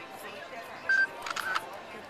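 A camera taking a snapshot: a short high beep about a second in, followed by a few quick shutter clicks.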